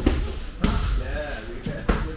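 Muay Thai sparring strikes landing: three sharp thuds of gloved punches and kicks on gloves and shin guards, at the start, about two-thirds of a second in, and near the end.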